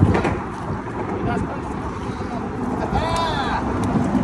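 Wind buffeting the microphone in a low, fluctuating rumble, with a short voiced exclamation that rises and falls in pitch about three seconds in.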